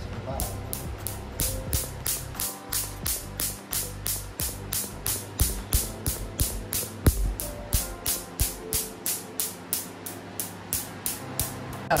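Laser handpiece firing a steady train of pulses during a carbon laser peel, each one a sharp snap as the laser zaps the charcoal mask on the skin, about three and a half snaps a second. One louder knock comes about seven seconds in, over background music.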